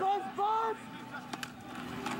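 A man's voice for under a second, then quieter stadium crowd noise with one sharp click.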